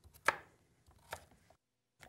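Chef's knife cutting through butternut squash and knocking on a wooden cutting board: one sharp knock about a quarter second in, then a few fainter taps, before the sound cuts off suddenly.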